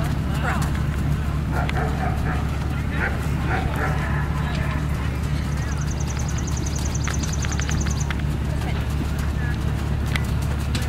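Outdoor ambience dominated by a steady low rumble of wind on the microphone, with faint distant voices; a rapid high clicking trill runs for a couple of seconds a little past the middle.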